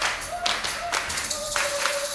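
Live band music carried by steady rhythmic hand claps, about two a second, with a few held melodic notes over them.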